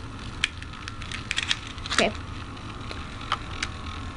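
A metal Beyblade spinning in a plastic bowl stadium, giving scattered light clicks at irregular spacing over a low steady hum.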